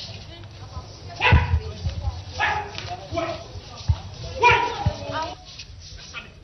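Several short, loud human vocal cries over a low murmur of background noise, with a few dull thumps in between.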